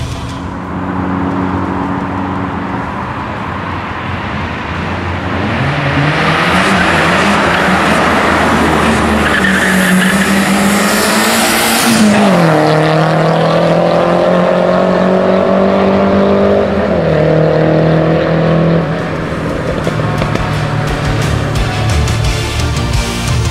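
Car engine revving hard, its note climbing for several seconds under a loud rush of tyre and wind noise. The pitch drops sharply about halfway as the car goes by, holds steady, then drops again a few seconds before the end.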